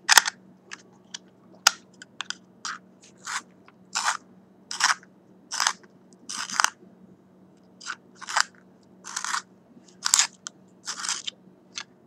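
A pencil being turned in a pencil sharpener, the blade shaving wood and lead in a series of short, dry scraping strokes, roughly one a second.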